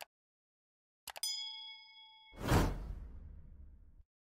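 Subscribe-button animation sound effects: a short click at the start, then a quick double click about a second in followed by a bell-like ding that rings for about a second, then a whoosh about two and a half seconds in that fades away.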